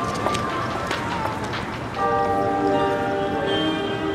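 Noisy scene ambience with scattered knocks and a wavering tone. About two seconds in, ringing bell-like chimes take over.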